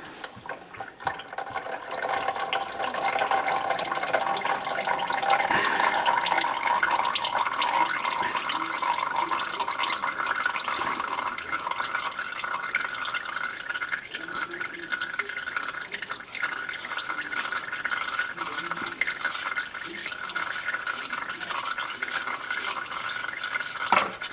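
Used engine oil running and dripping steadily from a loosened oil filter on a 6.1 Hemi, draining past the filter's diverter spout. The flow builds about a second or two in.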